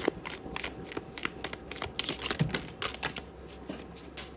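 A tarot deck (The Unfolding Path Tarot) being shuffled by hand: a quick, irregular run of soft card clicks and slaps that thins out near the end.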